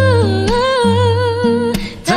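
Song cover: a singer holds one long wordless note with vibrato over low backing notes. The note dips in pitch about half a second in, rises back, and breaks off near the end.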